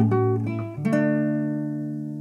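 Nylon-string classical guitar played fingerstyle: a few plucked notes, then a chord struck just under a second in that rings on and slowly fades.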